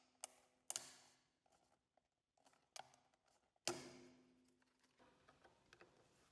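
A few sharp plastic clicks and snaps, about four over four seconds, as the rocker button covers and cover frame of a wall switch are pried off by hand.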